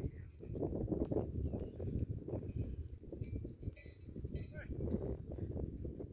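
Wind buffeting the microphone in uneven gusts: a low, rumbling noise that rises and falls. A few faint, brief higher sounds come through in the middle.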